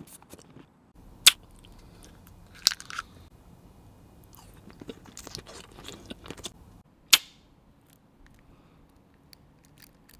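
Close-miked mouth chewing and biting a piece of candy, with three loud sharp cracks and a run of small quick clicks between the second and third.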